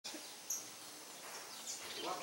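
Small birds chirping faintly over steady outdoor background hiss: one short high chirp about half a second in, and a few fainter chirps near the end.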